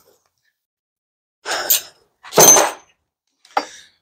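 Steel hand wrenches clinking as they are put down: a soft knock, then a louder metallic clank with a short high ring, then a light click.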